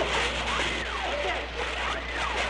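A fire hose hissing as its jet of water is sprayed, a steady rough rush of noise. Behind it, a thin wailing tone glides up and down.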